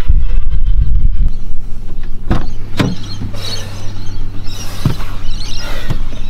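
Wind rumbling on the microphone for about the first second, then a steady low hum inside a car, broken by a few sharp knocks and clicks.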